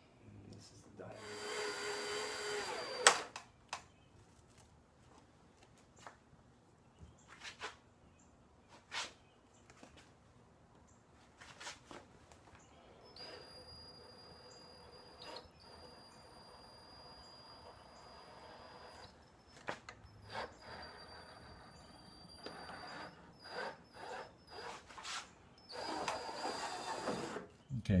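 Cordless drill running in short, slow bursts as a half-inch bit bores through the plastic of a motorcycle tour pack lid. One loud run comes about a second in, a longer, softer run sits in the middle, and another loud run comes near the end, with small clicks and knocks between.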